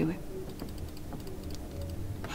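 The tail of a woman's spoken word, then a pause in which a low steady hum and a few faint clicks are heard.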